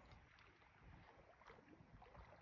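Near silence: faint water movement around a float tube, with a few small ticks.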